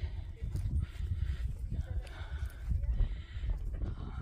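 Wind buffeting a phone's microphone on an exposed hillside: a low, irregular rumble that flutters throughout, with hissy gusts coming and going every second or two.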